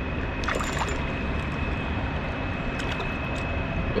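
Steady rush of wind and moving creek water, with a few faint splashes from a hooked smallmouth bass thrashing at the surface as it is drawn in to the bank.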